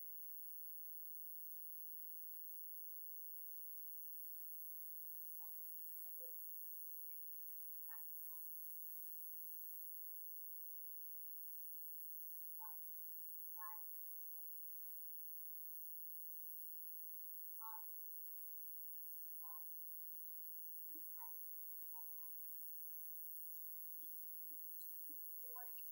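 Faint room tone with hiss and a steady thin tone, under scattered faint snatches of a distant voice speaking off-microphone.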